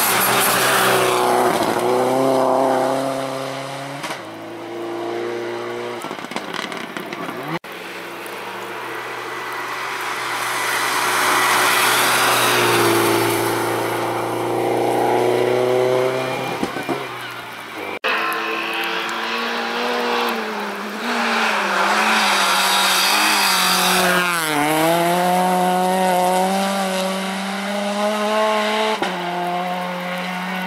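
Rally cars, among them Subaru Impreza WRX STI hatchbacks with turbocharged flat-four engines, driving past one after another. The engines rev hard and drop in pitch through gear changes and corners, over tyre noise. There are three passes, the sound cutting abruptly from one car to the next about a third and two thirds of the way through.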